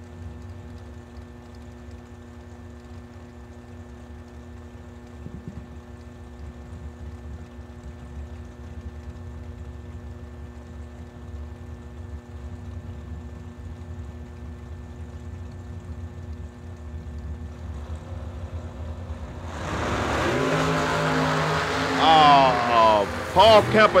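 Two dragster engines idling at the starting line, a low steady rumble. About twenty seconds in both launch at full throttle, a sudden loud blast of engine noise that climbs in pitch as the cars accelerate away.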